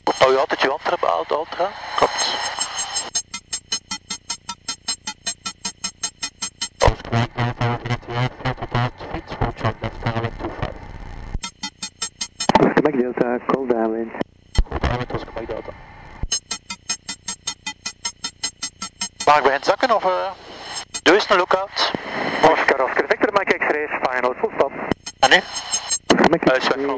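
Garbled voices over a light aircraft's headset intercom and radio, broken by stretches of sharply regular pulsing interference, about four pulses a second.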